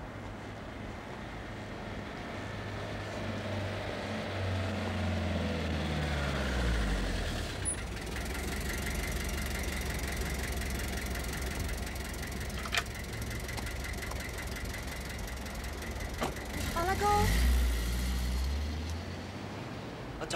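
A car engine running with a low hum that drops in pitch about five to seven seconds in, then runs steadily, and swells with a rising whine near the end.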